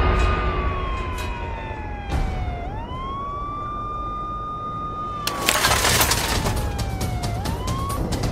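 A siren-like sound effect: one tone that slides slowly down, swoops quickly back up and holds, then slides down and swoops up again, over a low rumble. A loud burst of noise cuts in about five seconds in.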